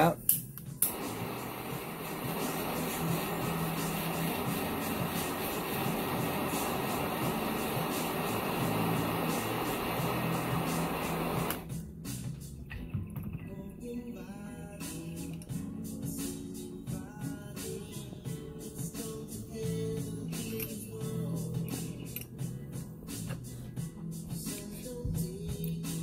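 Handheld butane torch running with a steady hiss for about ten seconds, heating the quartz banger of a dab rig, then shut off suddenly. Background music plays throughout.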